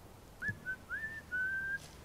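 A man whistling a short tune: four clear notes beginning about half a second in, the first three short with little upward slides, the last held longest.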